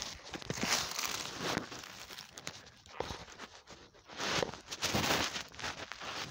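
Irregular rustling and crunching of dry leaf litter and twigs, mixed with handling noise from the phone being moved about close to the ground.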